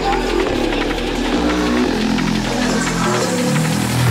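Drum and bass DJ mix playing loudly, with heavy bass lines and a driving beat. About three seconds in the deepest sub-bass cuts out, and a loud bass note returns near the end.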